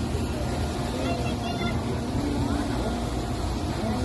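Faint voices of people talking over a steady low outdoor rumble.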